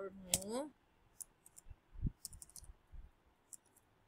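Faint, irregular key clicks of a computer keyboard as a few characters are typed one by one, with a soft thump about two seconds in.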